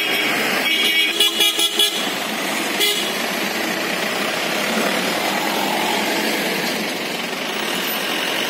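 Vehicle horn sounding in a run of quick toots about a second in, over steady street traffic noise, with one short sharp crack near the three-second mark.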